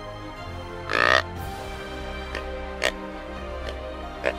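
Buck grunt call (Illusion Systems Extinguisher grunt tube) blown in a loud, deep grunt about a second in, imitating an immature buck trailing a doe in estrus. A few short, sharper notes follow over steady background music.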